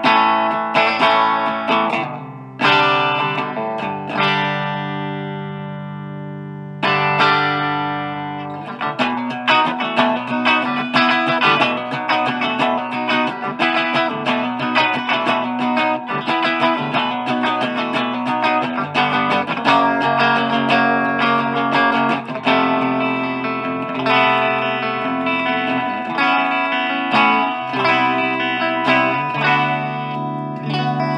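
Electric guitar played through an Orange Micro Terror amp into a Marshall MG-series 4x12 cabinet with four Celestion speakers. A few chords are strummed, one is left to ring and fade for about four seconds, then a run of quicker picked notes and riffs follows.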